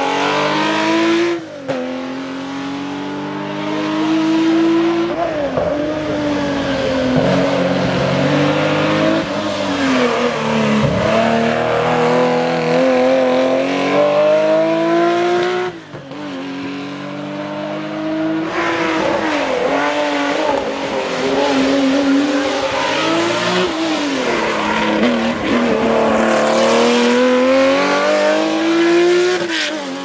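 Historic rally car engines driven hard through hairpin bends, one car after another: the revs climb and drop again and again with gear changes and braking. The sound breaks off sharply about a second and a half in and again about 16 s in.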